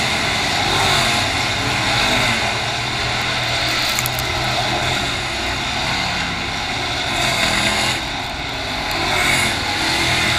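Dirt late model race cars' V8 engines running hard around the track. A continuous loud drone whose engine notes rise and fall as the cars pass through the turn.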